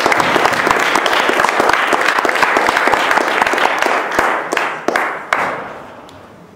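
Audience applauding a speaker at the end of his talk, many hands clapping, dying away near the end.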